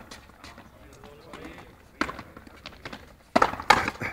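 Frontenis rally: sharp cracks of the rubber ball off the racquet and the frontón wall, one about halfway through and a quick cluster of louder ones near the end, with faint voices in between.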